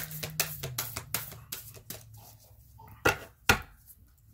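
Tarot cards being shuffled and handled: a quick run of light card clicks that thins out after about two seconds, then two sharp snaps half a second apart near the end.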